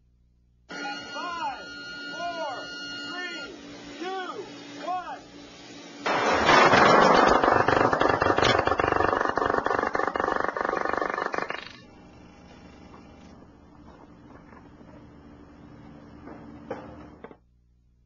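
Laser-propelled lightcraft in powered flight: a loud, rapid buzz of pulsed carbon-dioxide laser detonations, the laser-heated air and plastic propellant exploding about 25 times a second. It lasts nearly six seconds and then cuts off sharply, leaving a quieter steady hum.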